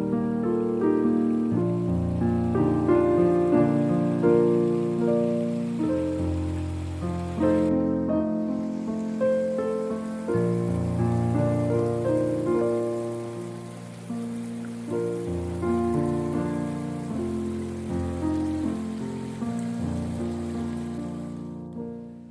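Solo piano music, a melody over held chords, fading out near the end.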